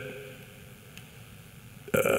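Quiet room tone of a large hall in a pause between a man's spoken phrases. The reverberation of his last words fades early on, and his voice starts again right at the end.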